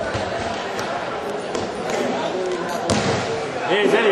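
Spectators' chatter on a hard-floored court with several sharp ball impacts on the concrete, and a raised voice shouting near the end.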